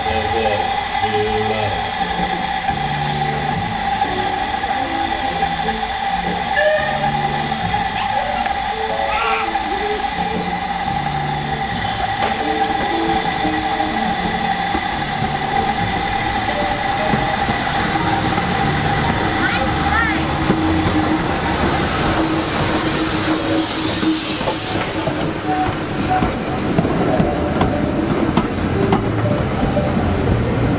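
BR Standard Class 4 steam locomotive 75069 standing with a steady hiss of steam and a thin whistling tone. About 22 seconds in it pulls away with a loud rush of steam hiss, and its carriages then rumble past.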